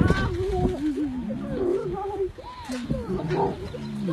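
A young lion making a run of short, rising and falling vocal calls at close range as it hugs a person, with a woman's brief "oh" near the end.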